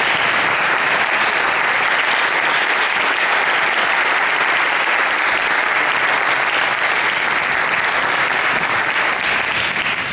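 Audience applauding, a dense and steady clapping at full strength throughout.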